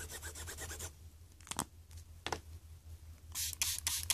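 Felt-tip Sharpie marker scribbling quick strokes on a craft mat, then a few light taps, then short, louder rubbing strokes near the end.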